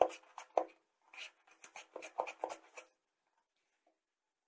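A raw potato being slid back and forth over the blade of a plastic mandoline-style vegetable slicer, cutting thin chip slices: a quick run of short scraping strokes that stops about three seconds in.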